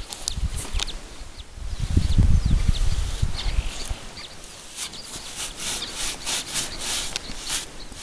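A stiff grooming brush rubbing over a horse's coat in short, quick strokes, about three or four a second in the second half. A low rumble is loudest in the first half.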